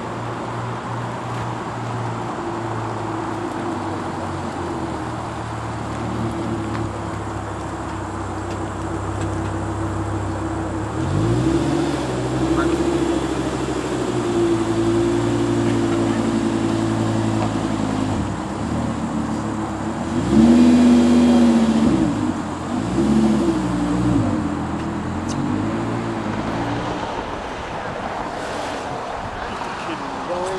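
Audi R8 engine running at low revs as the car rolls slowly. About a third of the way in the revs rise and hold for several seconds, then drop. Around two-thirds of the way in come two short throttle blips, each rising and falling, before the engine settles back to a steady low note.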